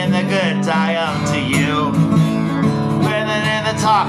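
Steel-string acoustic guitar strummed in a steady folk/country accompaniment, the chord shifting about a second in, with a bending melody line carried above it.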